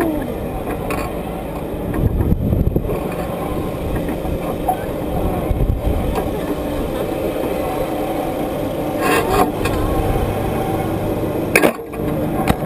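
Wind rushing over the onboard camera microphone of a bungee-ball fairground ride as the capsule swings on its cords, a steady noise heavy in the lows. A sharp knock near the end.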